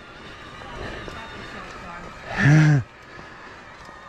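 Mountain bike rolling down a rock slab: a steady rush of wind and tyre noise, with one short shout from the rider about halfway through.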